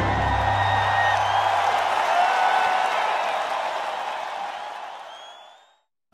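A crowd applauding and cheering, with a few rising whistles, over the last of an orchestral theme that drops away in the first two seconds. The cheering then fades out to silence shortly before the end.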